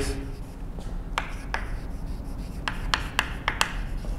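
Chalk writing on a blackboard: a string of short, irregular scratches and taps as the letters are written stroke by stroke, coming more quickly in the second half.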